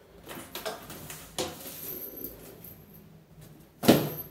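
A quilted leather handbag with a metal chain strap being lifted off a small wooden table and put down: soft rustling and chain clinks, a knock about a second and a half in, and a louder, sharp knock near the end.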